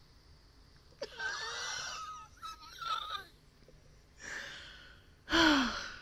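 A woman wheezing with laughter in four breathy, gasping bursts. The last and loudest comes a little over five seconds in and falls in pitch.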